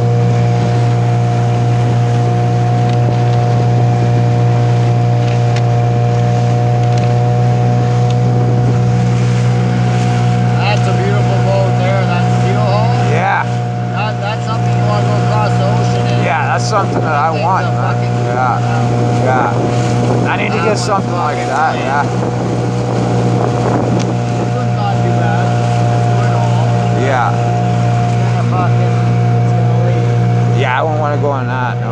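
Small boat's motor running at a steady, unchanging drone while the boat is under way, with the wash of water and wind underneath.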